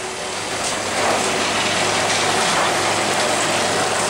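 A vehicle engine idling: a steady low hum under an even hiss that does not change.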